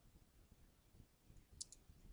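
Near silence, broken near the end by a quick double click of a computer button that advances the slide.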